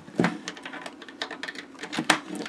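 Cable jacks being handled and pushed into the back of an M-Audio Fast Track Pro audio interface: a run of small clicks and knocks, with a louder knock just after the start.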